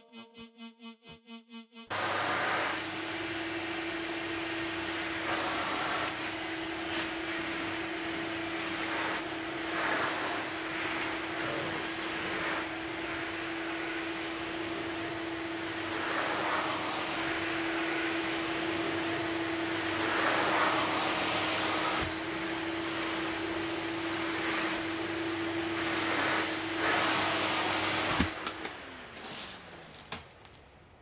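Vacuum cleaner starting about two seconds in and running steadily, a constant motor hum under a rush of air that swells and eases every few seconds. Near the end it is switched off and its pitch falls as the motor winds down.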